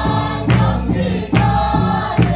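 A group of men and women singing a song together in unison, with hand claps on the beat about twice a second.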